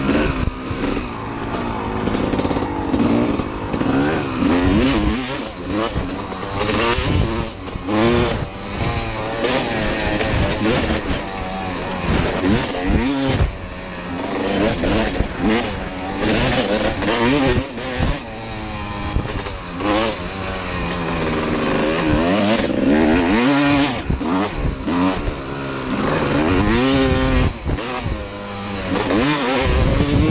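1992 Kawasaki KX250 two-stroke dirt bike engine being ridden hard. It revs up and falls back over and over as it climbs through the gears, shifts and comes off the throttle, with wind noise rushing over the microphone.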